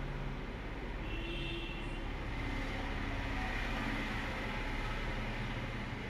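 Steady background noise: a low hum under an even hiss, with a few faint tones about a second in.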